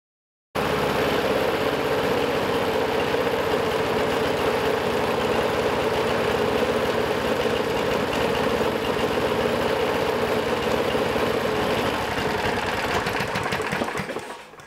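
Small single-cylinder lawn mower engine running steadily on gasoline vapor drawn through a hose from a canister, then dying away near the end as it stops.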